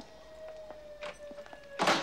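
A faint, long, slightly falling musical note with a few soft clicks, then near the end a short, loud burst of a man's laughter.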